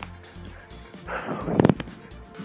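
A slide tackle on grass: a short rushing sound of the body sliding over the turf, then a loud cluster of sharp thuds about one and a half seconds in as the ball is kicked away and the player lands.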